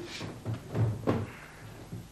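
A quick run of about four knocks and thumps in the first second or so, the loudest about a second in, like a cupboard door or hard objects being handled.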